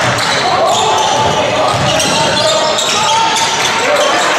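Live basketball game sound: voices of the crowd and players over a steady hubbub, with a basketball being dribbled on the court.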